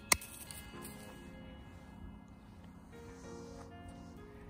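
Background music of sustained notes throughout. Just after the start comes one sharp snip of hand-held bypass secateurs cutting through a thin hydrangea stem.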